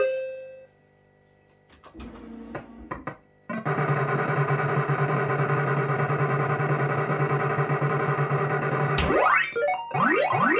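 Electronic sound effects from a 1987 JPM Hot Pot Deluxe fruit machine (an MPS2 machine). After a short lull and a few clicks, a long, steady electronic tone pattern starts about three and a half seconds in and runs while the reels play out. Near the end it stops with a sharp click and a run of quick rising zaps.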